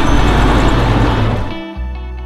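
A classic Jaguar saloon driving past close by, its engine and tyre noise under background music; the car sound cuts off about one and a half seconds in, leaving the music alone.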